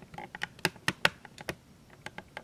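A quick, irregular run of sharp clicks and taps, about nine in two seconds, the loudest about a second in.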